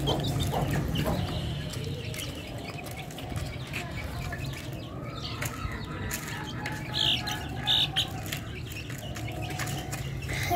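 A flock of young Aseel–Desi mix chickens clucking and calling, with scattered taps and rustling throughout; two short, high peeps stand out about seven and eight seconds in.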